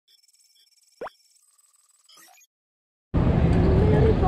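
A quick, upward-sliding 'plop' sound effect about a second in, followed by a faint twinkly flourish. After a moment of silence, loud city street noise cuts in suddenly near the end.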